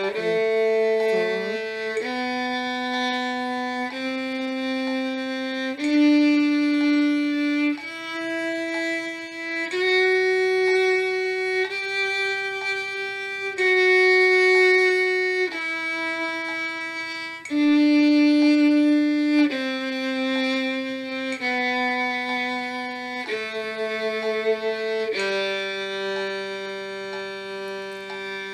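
Solo violin bowing a one-octave G major scale in slow half notes, each note held about two seconds, climbing from the low G to the G an octave above and stepping back down to the low G.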